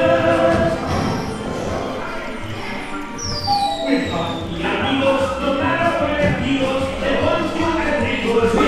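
Theme-park dark-ride soundtrack: festive music with singing voices over a steady pulsing bass beat, with a single falling whistle about three seconds in.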